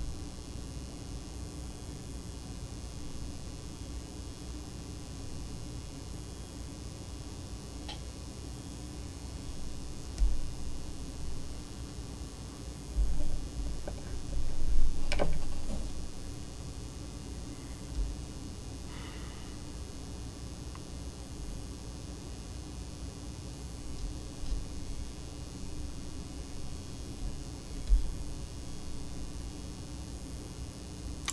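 Steady low room hum with a few soft low thumps and one sharp click about halfway through: handling noise as a jig hook is clamped into a fly-tying vise.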